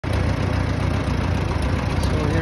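Farmall B tractor's four-cylinder engine running steadily at a low, even idle.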